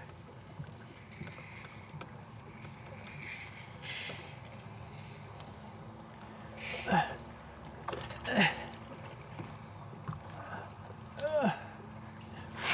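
A man's short grunts and exclamations, about three of them with falling pitch in the second half, over a low steady background of wind and water around a fishing boat. There is a brief knock about eight seconds in.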